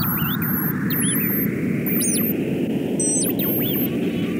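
Experimental analog electronic music made on self-built electronics. A band of filtered noise slowly sweeps upward over a rumbling noise bed, while thin, high oscillator tones swoop rapidly up and down in loops above it.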